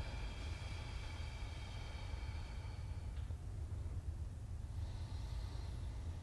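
Quiet room tone: a steady low hum, with a faint thin high whine that stops about three seconds in.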